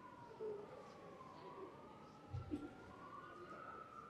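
Faint wailing siren, its pitch slowly rising and falling, with a couple of soft knocks.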